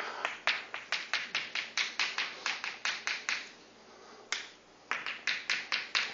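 Chalk tapping on a blackboard while writing: a run of quick sharp clicks, about four a second, with a pause of about a second just past the middle.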